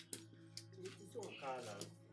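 A woman's voice in a drawn-out wail of grief, falling in pitch about halfway through, over quiet background music with a steady low drone.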